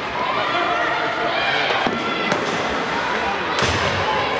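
Ice hockey game sounds in a rink: voices of players and spectators calling out over the ice, with three sharp knocks of sticks and puck against the ice and boards, two just after halfway and one near the end.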